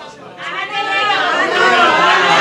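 Several people talking over one another in a room, a murmur that swells about half a second in after a brief lull.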